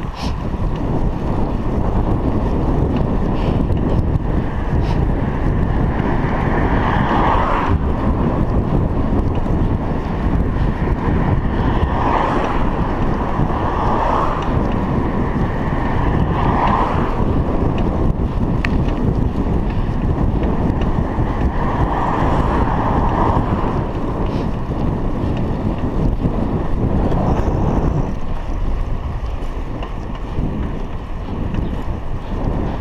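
Steady, loud wind rumble buffeting a chest-mounted action camera's microphone as a bicycle is ridden along a paved road.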